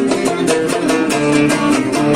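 Kabyle string ensemble of banjo, mandole and acoustic guitar playing an instrumental passage with no singing, plucked and strummed in a quick, even rhythm.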